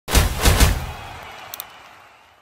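Logo-intro sound effect: three heavy hits in quick succession in the first second, then a fading tail, with a short bright click about one and a half seconds in.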